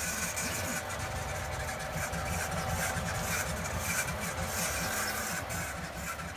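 Modified Anet A8 Plus 3D printer running a PETG print: its stepper motors move the print head and bed in uneven spurts over a steady fan hum.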